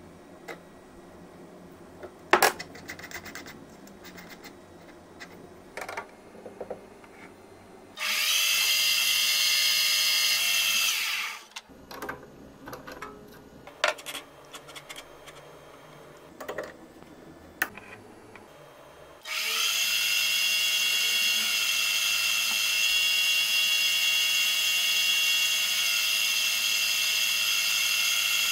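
Small benchtop metal lathe running, a steady whine with many high overtones, while a center drill in the tailstock chuck bores into the end of a spinning rusted steel bolt. It runs twice, briefly about eight seconds in and again from about two-thirds through, each time starting and stopping sharply, with clicks and knocks of handling the tools between the runs.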